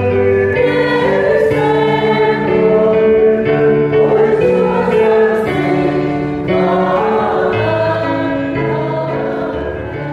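A Christian hymn sung with choir-like voices over instrumental accompaniment, in long held notes. The music gradually gets softer in the last few seconds as the song winds down.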